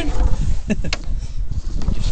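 Jet boat running along a shallow river, a loud low rumble of engine and water with wind buffeting the microphone.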